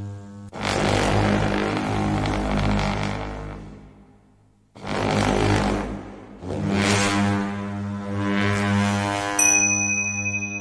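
Tibetan monastic horns sounding long, low, buzzing blasts over a steady drone. A short silence falls about four and a half seconds in, and a dip comes around six seconds. Near the end, high steady ringing tones join.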